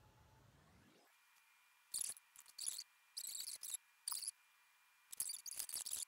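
Mascara tube and wand being handled close to the microphone: short high, scratchy squeaks in clusters, starting about two seconds in.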